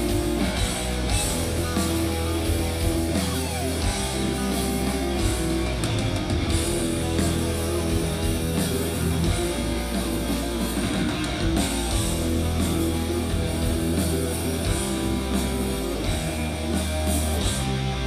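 Black metal band playing live through a festival PA: distorted electric guitars over bass and drums, an instrumental passage with no vocals.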